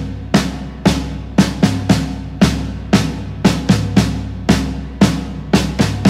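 Drum kit playing a steady rock beat of bass-drum and snare hits, about two a second with some quick doubles, over held low bass notes: the instrumental intro of an indie rock song.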